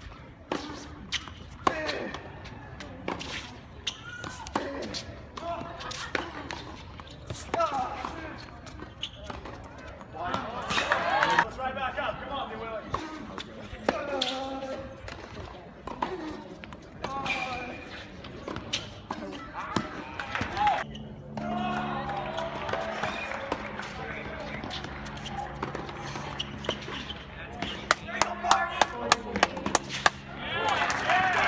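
Tennis ball struck by rackets and bouncing on a hard court: sharp pops scattered through, with a quick run of them near the end, over the talk of spectators around the court.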